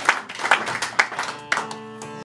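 A few sharp hand claps about twice a second, then a strummed acoustic guitar chord left ringing near the end.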